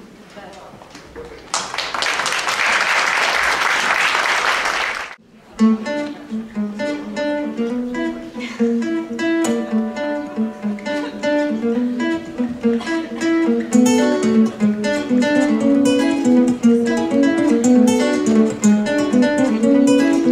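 Audience applause for about three and a half seconds, then two acoustic guitars start a song's intro, plucking notes in a steady rhythm.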